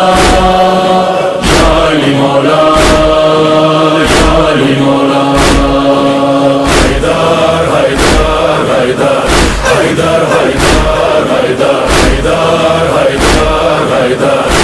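Loud devotional chanting with music, held voiced notes over a heavy regular beat that strikes about every second and a quarter.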